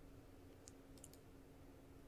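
Near silence: room tone with a faint steady hum and a few faint clicks about a second in.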